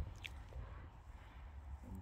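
Faint background with a low rumble and one short high tick about a quarter of a second in.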